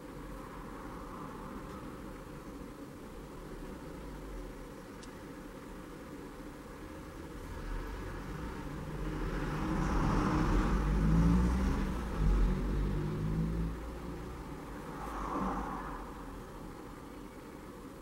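A low rumble of a road vehicle that swells from about eight seconds in, peaks a few seconds later and fades away, over a faint steady background hum.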